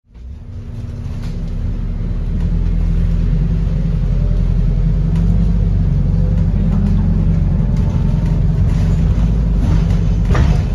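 Cabin noise of a series-hybrid New Routemaster double-decker bus on the move, heard from the upper deck: a steady low drone of the drivetrain and road, with a faint rising whine about halfway through as it picks up speed.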